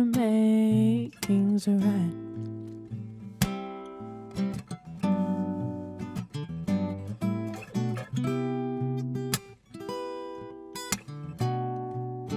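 Acoustic guitar being strummed and picked through a chord pattern, each chord striking and ringing out. In the first second or so a sung note is held with vibrato before it fades.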